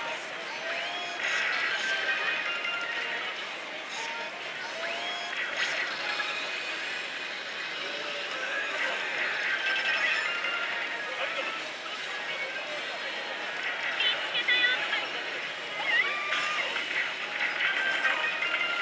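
Oshu! Banchou 3 pachislot machine playing its music, electronic effects and shouted character voices during play, over the steady electronic din of a pachislot parlour.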